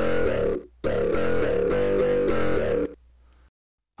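A polyphonic music loop played back from a DAW: a brief burst of chords, a short break, then about two seconds more of the phrase, stopping near the three-second mark.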